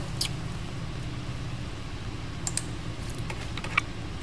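A handful of separate computer keyboard clicks, spaced irregularly, over a steady low hum of room tone.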